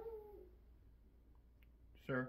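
A dog's single short whine, a pitched call that bends slightly and fades out within about half a second.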